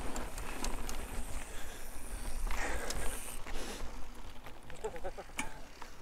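Mountain bike rolling along a sandy slickrock trail: tyre noise on the ground, with frequent small clicks and rattles from the bike as it goes over the rough surface.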